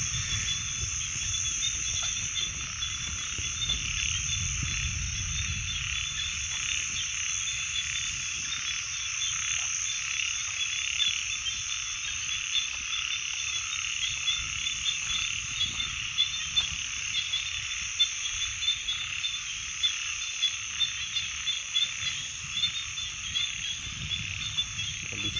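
A dense chorus of frogs calling, many calls overlapping without pause, with a steady high trill above them.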